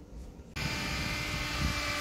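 Quiet room tone, then about half a second in a sudden switch to steady outdoor background noise, an even hiss and rumble with a faint hum under it.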